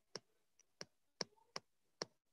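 Four faint, sharp clicks at uneven intervals over near silence.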